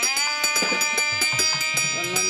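Temple hand bell rung rapidly and steadily during aarti, several strikes a second, its ringing overtones held throughout. Under it, a pitched tone slides down at the start and then holds steady.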